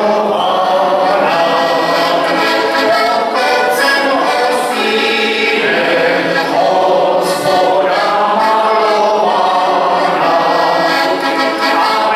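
Button accordion playing a lively folk tune, with sustained chords under a moving melody.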